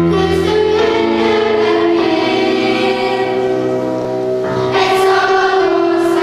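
Children's school choir singing a slow song in long held notes.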